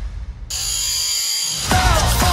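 Soundtrack music with a heavy bass. About half a second in, a bright hissing transition effect cuts in and the bass briefly drops out. A melodic music line starts near the end.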